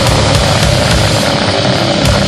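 Loud extreme metal (goregrind) song: heavily distorted guitar over fast, dense drumming, with no break.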